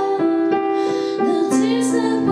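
A young woman singing a slow pop ballad with her own piano accompaniment, long held sung notes over sustained piano chords.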